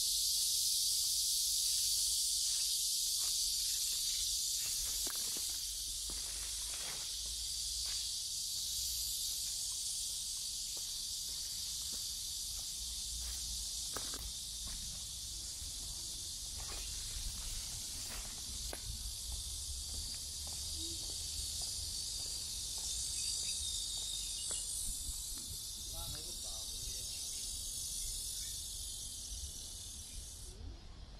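A dense, steady, high-pitched chorus of cicadas buzzing without a break.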